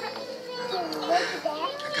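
Speech: voices talking over a steady low hum, with no clear sound other than voices.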